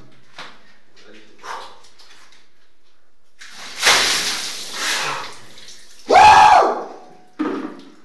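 A bucket of ice water poured over a man's head in a tiled shower, splashing down for about two seconds. Shortly after, he lets out a loud cry that rises and falls in pitch, then a shorter one.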